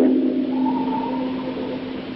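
A steady single low tone, fading slowly, with a fainter higher tone joining it for about a second in the middle.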